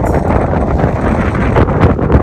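Wind blowing hard across the microphone: a loud noise, heaviest in the low end, that rises and falls in gusts.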